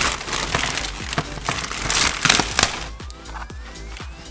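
Plastic packaging bag crinkling and rustling in bursts as a new motorcycle fender is pulled out of it, dying away after about two and a half seconds. Background music with a steady beat runs underneath, with a rising tone near the end.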